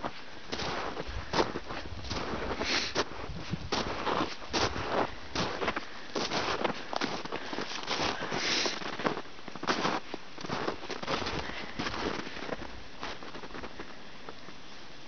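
Footsteps crunching in snow: a series of short crunches at about two a second, easing off near the end.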